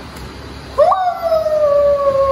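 One long, high cry starts about a second in. It jumps up at once, then slides slowly down in pitch for nearly two seconds.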